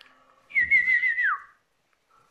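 A pet parrot gives a single whistled call, warbling around one pitch and then sliding down at the end.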